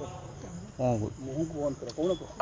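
Steady high-pitched drone of insects. Over it, about a second in, a man's voice speaks briefly and low.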